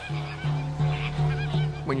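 Birds honking in a series of short calls over background music with long held notes.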